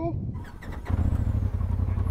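Polaris RZR Turbo S side-by-side's turbocharged engine idling steadily, a low even rumble heard from inside the open cab. It comes in sharply about a second in.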